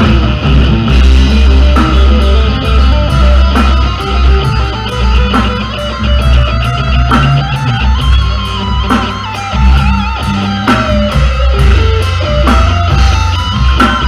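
Electric guitar solo on a Stratocaster-style guitar, melodic lines with notes bending up and down in pitch, over bass guitar and a rock drum kit played live by a trio.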